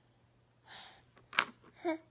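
A toddler's short breathy gasp, then a sharp click about a second and a half in and the start of a brief vocal sound near the end.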